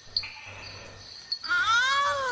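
A frog gives a loud wailing distress scream about a second and a half in, one long cry that rises and then falls in pitch.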